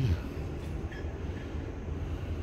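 A steady low rumble.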